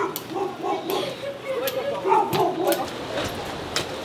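A dog barking in a quick run of short yaps, with a few sharp clicks mixed in.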